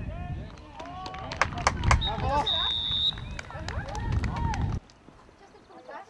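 Sounds of a football match: voices calling out on and around the pitch over a low rumble, with several sharp knocks, and a referee's whistle blown once and held for about a second, about two seconds in. The sound drops away suddenly near the end.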